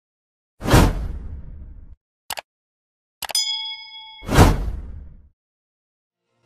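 Edited intro sound effects on silence: a heavy whooshing hit with a deep tail, a short click, a bright metallic ding that rings for about a second, then a second hit that swells up and fades.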